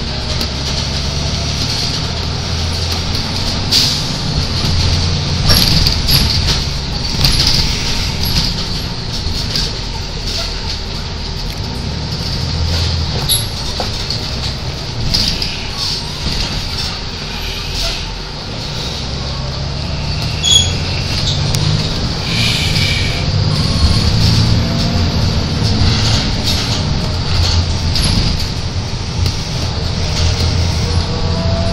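A car driving, with a steady low engine and road rumble and scattered small knocks and rattles.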